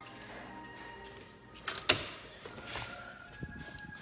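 A wooden front door's lever handle and latch clicking as the door is opened: one sharp click about two seconds in, followed by a few softer knocks.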